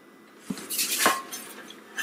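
A dark metal loaf pan being picked up and handled: a few short clanks and scrapes of metal about half a second to a second in, then lighter ticks and one more knock near the end.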